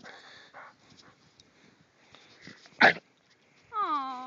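A dog working through deep snow, with faint snuffling and rustling. One loud, very short blast of sound from the dog comes about three seconds in. A drawn-out whine with a wavering pitch starts just before the end.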